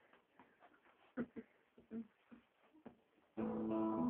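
Acoustic guitar: a few faint, scattered sounds, then about three and a half seconds in the guitar starts strumming chords loudly.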